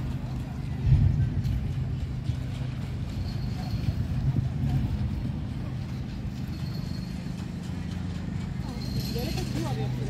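A steady low engine hum, with people's voices in the background and a single bump about a second in.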